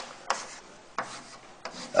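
Scratchy rubbing of a pen or chalk drawing a line across a board, with a few light taps.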